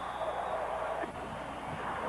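Stadium crowd noise carried by an old television broadcast: a steady, even wash of the crowd's sound, with no single event standing out.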